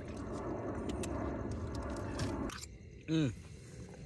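Water glugging from a plastic bottle as a man drinks from it, for about two and a half seconds, then a short vocal sound falling in pitch.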